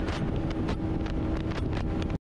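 Romet Division 125 motorcycle cruising at about 130 km/h in fifth gear: wind noise on the microphone over a steady engine tone.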